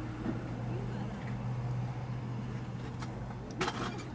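Steady low hum of a car idling, heard from inside the cabin, with one short sharp click or knock near the end.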